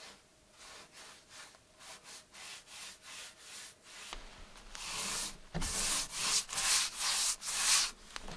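A paintbrush stroking wood stain onto a wooden plank, a rhythmic scratchy rubbing of about two strokes a second. The strokes are faint at first and become much louder about halfway through.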